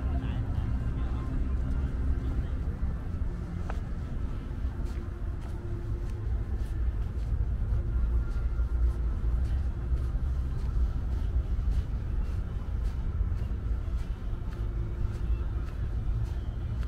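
Outdoor city ambience while walking: a steady low rumble with faint voices, and soft footsteps at walking pace through most of it.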